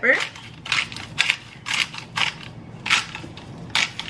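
Hand-twisted pepper grinder grinding black pepper: a series of short, crunchy rasps, one with each twist, roughly two a second.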